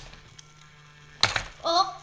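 Loopin' Chewie toy game: a sharp plastic clack about a second in as the plane on the spinning arm hits a player's flipper lever, after a faint tick near the start, then a brief vocal exclamation.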